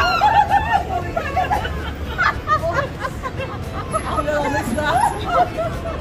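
Several women's voices crying out and laughing over a babble of voices, loudest in a rising outburst right at the start: a startled reaction to a prank.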